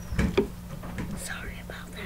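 Close-miked mouth sounds from eating noodles: two soft clicks in the first half second, then a short, hissing, breathy sound about a second in.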